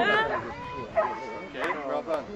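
A dog barking and yipping a few times, short and sharp, among people talking.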